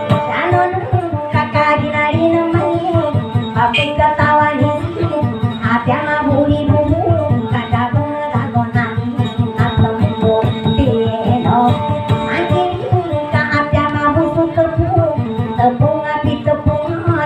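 Maguindanaon dayunday song: a voice singing a wavering, ornamented melody over a fast, steady strummed acoustic guitar.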